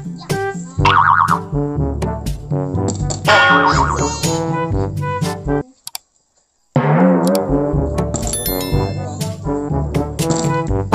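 Edited-in comic background music with cartoon boing-style sound effects. It cuts out completely for about a second a little past halfway, then starts again with a wobbling glide.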